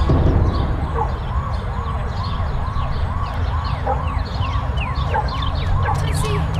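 Emergency vehicle siren yelping, rising and falling about twice a second over a low rumble, with short high chirps above it.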